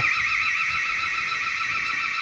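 Dahua TiOC active-deterrence camera's built-in siren sounding its default alarm tone after a detection trigger: a high electronic tone warbling rapidly up and down.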